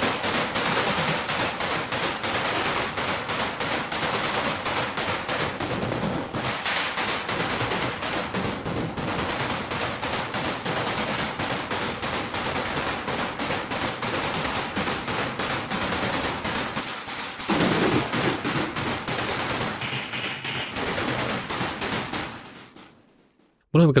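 Synthesized noise percussion made from mixed white and pink noise in a u-he Zebra 2 patch, playing a fast repeating run of short hissy hits, distorted and filtered. Its tone shifts as the settings change: the low end swells about 17 seconds in, the top end dulls around 20 seconds, and the pattern fades out shortly before the end.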